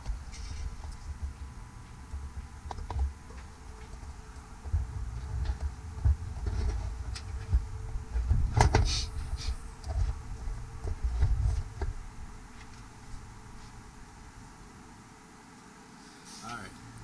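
Low, uneven rumbling and bumping from the camera being handled and repositioned, with one sharp knock about halfway through and a few light clicks.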